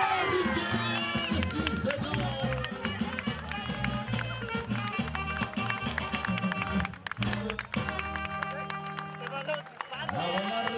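Live regional Mexican band music with a steady, bouncing bass line. It breaks off briefly about seven seconds in and then holds a long chord near the end.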